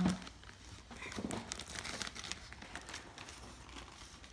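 A clear zip-top plastic bag crinkling and rustling as hands rummage through it, faint and on and off, loudest about a second in.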